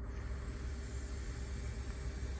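A long draw on an electronic cigarette: a steady airy hiss of air and vapour pulled through the atomizer, starting suddenly and held evenly throughout.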